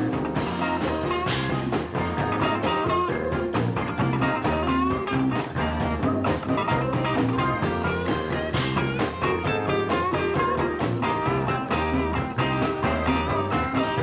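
A live band playing, with electric guitar prominent over bass and drums in a steady beat.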